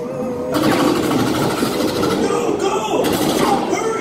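Horror-maze soundscape: eerie background music with a wavering low voice-like drone, and a loud hissing rush that starts suddenly about half a second in and lasts a couple of seconds.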